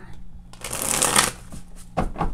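A deck of oracle cards being shuffled by hand: a dense rustle of cards about a second long, starting about half a second in.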